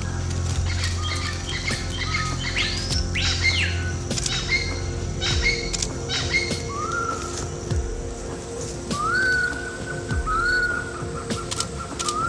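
Birds calling in forest: a pair of sweeping whistles about three seconds in, then short rising whistled notes repeated several times, over soft background music.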